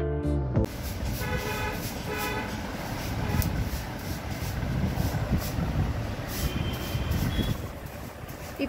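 Background music cuts off about half a second in, followed by a steady, noisy background with a few faint brief tones, like traffic heard in the distance.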